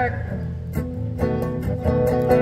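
Acoustic guitar strummed in a steady rhythm between sung lines, its chords ringing.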